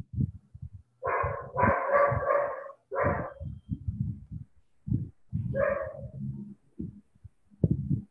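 A dog barking: a quick run of about five barks, then a single bark a couple of seconds later.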